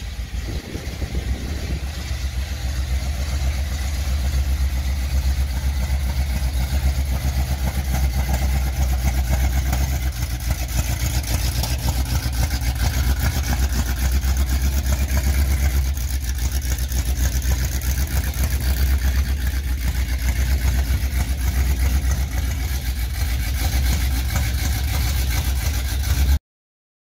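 A 1978 Ford F-250 pickup's engine running as the truck is driven out of a shop bay and across a lot. The sound comes up over the first couple of seconds, then runs steadily.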